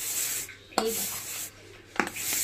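Plastic storage jars being moved on a shelf, their sides and lids rubbing and scraping against each other and the shelf in two short stretches, about half a second each.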